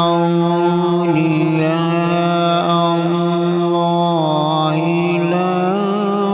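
A male qari's voice in Quran recitation (tilawat), held on one long melodic note that steps to a new pitch about a second in and again about four seconds in, then wavers in ornaments near the end.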